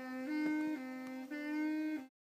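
Saxophone music: a single sax line alternating between a higher and a lower held note, each about half a second long, breaking off abruptly at the end.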